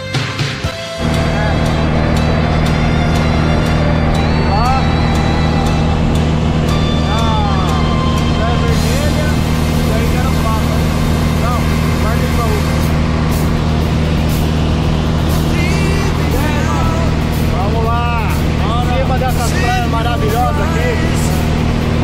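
Cabin of a single-engine propeller plane in flight: the engine and propeller run with a loud, steady low drone that starts abruptly about a second in. Voices talk over it.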